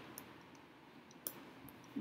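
Very quiet room tone with two faint, short clicks, one about a quarter second in and a sharper one just past the middle.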